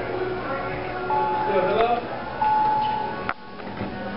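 Elevator's electronic chime sounding two steady tones, each about half a second long, over background voices and music, followed by a sharp click near the end.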